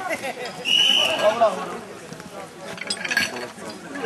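Chatter of several voices, with a brief high steady tone about a second in and a few light metallic clinks near the end.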